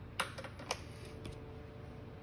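Two short, sharp clicks, the first about a fifth of a second in and the second a half-second later, over faint background noise.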